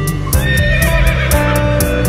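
A quavering horse whinny, about a second long, sounding over music with a steady percussive beat and sustained guitar notes.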